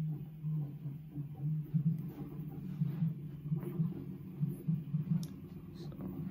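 A steady low hum that pulses unevenly, with a few faint ticks over it.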